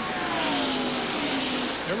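Two ARCA stock cars' V8 engines at full racing speed passing by, their engine note sliding steadily down in pitch as they go past.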